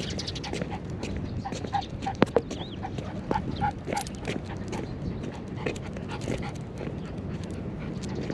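Miniature schnauzer giving a string of short whines and yips, with scattered clicks and taps. A couple of sharp sounds about two seconds in are the loudest.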